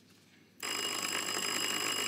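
A quiz contestant's electric answer bell ringing steadily, starting suddenly about half a second in: a team signalling that it wants to answer.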